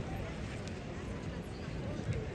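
Indistinct voices of people talking, too faint to make out, over a steady outdoor background rumble.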